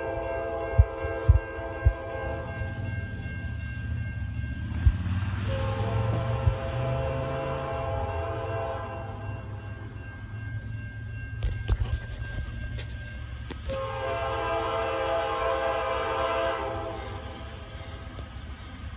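Approaching diesel locomotive's multi-chime air horn sounding a chord in a series of blasts: one ending about two seconds in, a long blast, a short faint one, then another long one. The pattern is the long-long-short-long signal for a grade crossing. A steady low engine rumble runs underneath.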